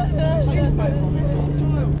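A boat engine runs with a steady low hum under several indistinct voices calling out.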